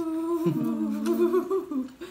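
A woman humming with her lips closed through a mouthful of food: a few held notes, with a step in pitch about half a second in, stopping just before the end.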